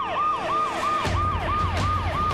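Police car siren on a fast cycle, its pitch falling and snapping back up about three times a second. Low, pulsing background music comes in about halfway.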